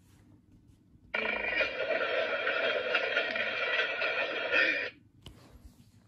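A sound clip played through a tablet's speaker: a dense, steady sound starting about a second in, lasting about four seconds and cutting off abruptly.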